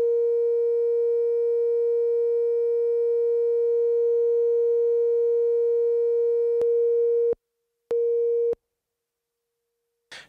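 Two BRENSO analog oscillators tuned in unison, sounding one steady tone just under 500 Hz with faint overtones. It cuts off suddenly a little past seven seconds, comes back for about half a second, then stops.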